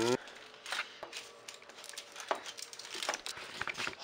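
Aluminium foil crinkling and rustling in short, irregular crackles as pizza dough is pressed out by hand on a foil-lined baking tray.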